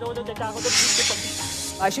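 News-bulletin transition sound effect: a rushing whoosh starting about half a second in and lasting a little over a second, over steady background music.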